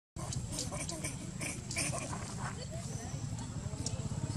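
Macaques giving short squeaks and grunts during a squabble, over a steady low rumble. The sound cuts in abruptly just after the start.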